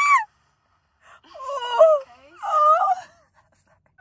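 A woman squealing and wailing with excitement, without words: a short high shriek at the start, then two longer high-pitched cries with sliding pitch, about a second in and again about two and a half seconds in.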